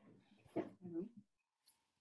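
A voice speaking a few quiet, brief words about half a second in.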